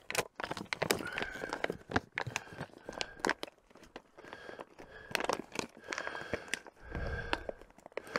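Thin clear plastic bag crinkling and crackling irregularly as hands open it and handle it.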